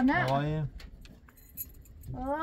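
A voice speaks briefly, then falls quiet, leaving a few faint light ticks and clinks.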